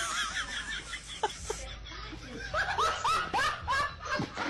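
A person laughing: a run of short, high-pitched laughs that comes quicker in the second half.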